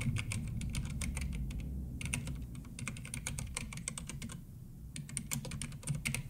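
Typing on a computer keyboard: quick runs of key clicks, broken by short pauses about two seconds in and again just before the end.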